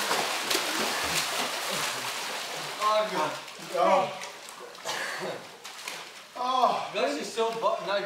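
Pool water splashing and churning as a swimmer lunges through to the wall, for about the first two and a half seconds. Men laughing and calling out follow in short bursts.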